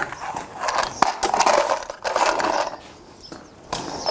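Handling noise: several short bouts of rustling and scuffing with a few sharp clicks, from a farrier rummaging for his nailing hammer and nails while holding a horse's hoof.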